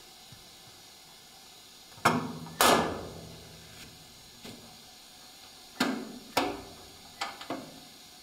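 Metal clanks on a steel mould box as a metal frame is set down over plastic film: two loud clanks about two seconds in, each ringing briefly. Four lighter knocks follow between about six and seven and a half seconds as the frame is pressed into place.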